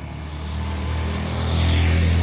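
Small Chevrolet hatchback's engine labouring up a steep grade under a heavy roof load, growing louder as it climbs close by. Motorcycle engines follow behind it.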